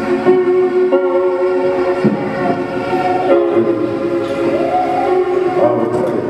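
Worship singing in long held notes, led by a man singing into a microphone, with a few slides up to new notes.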